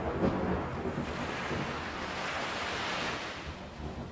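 Storm sound effect on a film soundtrack: the tail of a thunderclap rumbling away, then a rushing swell of wind-and-surf noise that builds about a second in and fades near the end.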